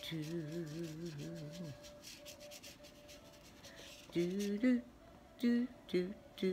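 A woman singing wordless 'doo' syllables to herself: one long, wavering note for nearly two seconds, then a few short notes near the end. Between the notes, a paintbrush brushes softly on paper.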